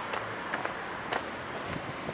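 Faint, steady outdoor background noise with a few light clicks.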